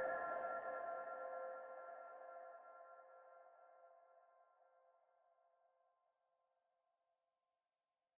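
The last chord of a hip-hop beat ringing out after the beat stops, fading away so that it is barely audible after about two seconds.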